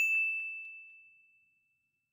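A single bell-like ding: one clear high tone struck once and fading away over about a second and a half.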